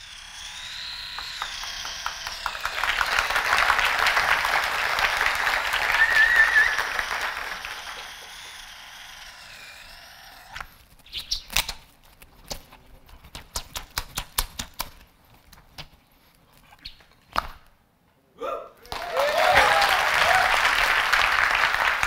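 Audience applause for about ten seconds, then a stretch of scattered sharp clicks and knocks, then applause again with cheering voices near the end.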